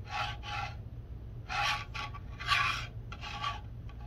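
A plastic 3D-printed carrier scraping as it is slid by hand across a textured board, in about five short scrapes, each under half a second.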